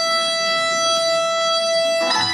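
Bulgarian folk dance music: a reedy wind instrument holds one long high note over a steady accompaniment, and the melody moves on right at the end.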